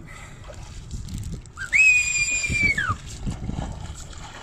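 Water splashing and sloshing at the surface as a sailfish is let go from the side of a jet ski. About two seconds in comes a loud, high whistle, held for about a second and then sliding down in pitch.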